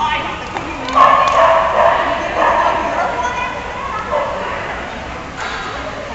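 A dog barking and yipping repeatedly, loudest about a second in and tailing off later, with voices mixed in.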